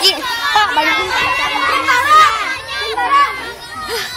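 A crowd of children shouting and calling out over one another while they play.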